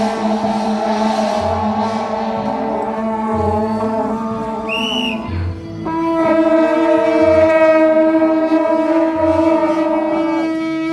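Shaojiao, the long brass processional horns of a Taiwanese temple troupe, blowing a long held note from about six seconds in. Before that, several other held tones sound, with a brief high whistle-like tone near the middle. A low beat comes about every two seconds throughout.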